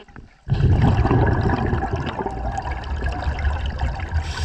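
Underwater scuba exhaust bubbles from a diver's breathing gear, a dense gurgling rush that starts suddenly about half a second in and keeps going.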